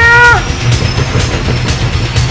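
The tail of a man's long, drawn-out shouted call through cupped hands, held on one pitch and breaking off about half a second in. It sits over background music with a steady low hum and a regular beat.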